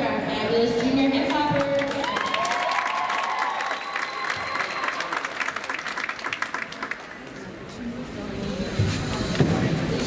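An audience cheering and applauding in a large gym, with clapping densest a few seconds in and easing off shortly before the end. A voice is heard over the first couple of seconds.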